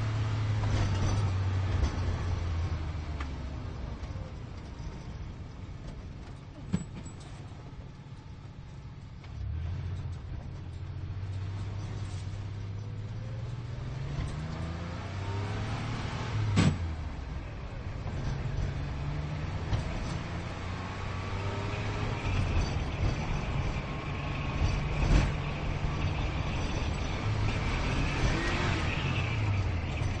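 Sports car engine accelerating through the gears: its pitch climbs, then drops back at each shift, several times over. Two sharp clicks, about 7 and 17 seconds in, and the pitch falls away near the end.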